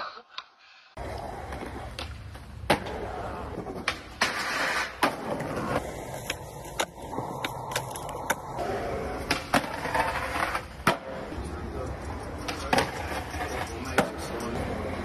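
Skateboards rolling on concrete, with many sharp clacks of boards popping and landing and a stretch of scraping as a board slides along a concrete ledge, starting about a second in after a near-silent moment.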